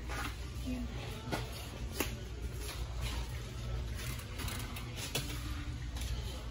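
Grocery store room tone: a steady low hum with a few sharp clicks and knocks, the loudest about two seconds in.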